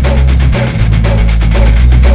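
Rock music: electric guitar and bass over a steady, fast drum beat of about four to five hits a second.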